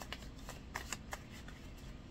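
A hand-held stack of cards being shuffled and handled: a quick, irregular string of light card flicks and taps.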